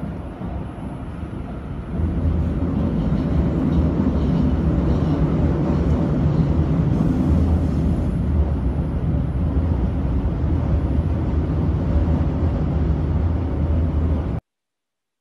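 Train running along the track, heard from inside the carriage: a steady low rumble that grows louder about two seconds in.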